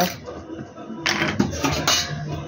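Spoons clinking and scraping against the small stainless steel bowls of a masala spice tray: one sharp click at the start, then a run of clattering in the second half.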